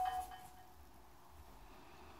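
A faint ringing, chime-like tone of several steady pitches dying away within the first half-second, then near silence: room tone.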